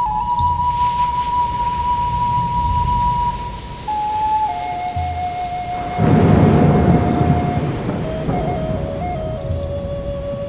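Native American flute playing slow, long-held notes that step down in pitch, over soft low pulses. A rushing swell of noise rises about six seconds in and fades away.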